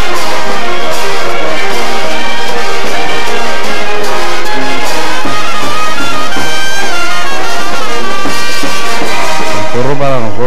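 Sabanero brass band playing a porro: trumpets and trombones carrying the melody over cymbal crashes and bass drum.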